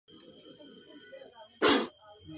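Indian spectacled cobra, hood spread in a defensive posture, giving one short, loud hiss near the end, over a faint steady high-pitched whine.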